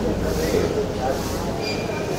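A man speaking Tamil to press microphones, over a steady low rumble of background noise that weakens in the second half.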